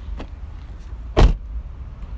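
A Toyota Celica coupe's door is pushed shut once, about a second in, giving a single short thud. The closing sound is described as not solid.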